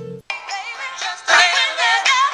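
A song with singing playing through an iPhone's built-in speaker, thin with no bass, starting after a brief gap about a quarter second in. The speaker is pointed down into the tabletop rather than out toward the listener.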